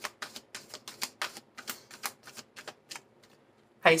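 A deck of reading cards being hand-shuffled: a quick run of crisp card flicks, about six or seven a second, that stops about three seconds in.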